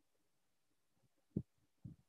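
Near silence: room tone, broken by two brief faint low thumps, the first about a second and a half in and a smaller one just after.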